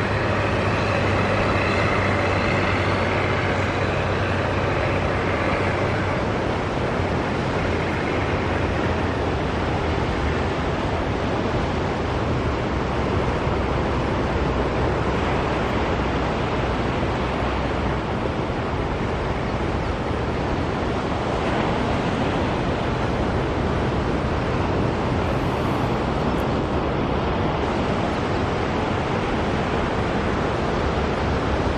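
Engines running steadily, a low drone under an even wash of noise, with no sharp events.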